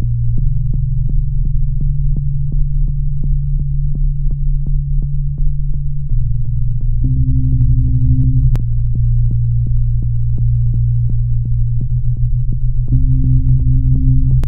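Electronic soundtrack: a low, steady synthesizer drone with a regular clicking pulse about three times a second, and a higher tone that comes in twice for a second or so.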